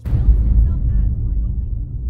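A deep orchestral string note from the Logic Pro X Cinema Strings software instrument comes in suddenly and loudly and is held as a low rumble, easing off slowly, over the film trailer's soundtrack.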